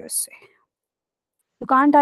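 Speech over a video call: one voice trails off at the start, then there is about a second of dead silence, and a second voice starts speaking near the end.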